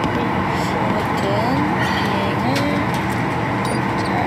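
Steady drone of airliner cabin noise, engine and airflow noise inside the passenger cabin, with no breaks or changes.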